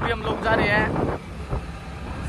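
A voice talking briefly in the first second, over a steady low rumble of wind buffeting the microphone.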